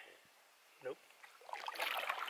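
Canoe paddle going back into the water with a swishing, splashing stroke starting about one and a half seconds in, after a near-quiet pause.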